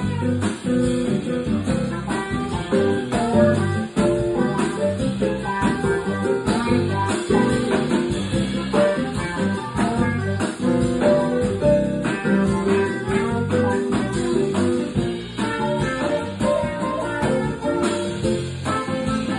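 Small jazz band playing live, with an archtop electric guitar out front over keyboard and drum kit.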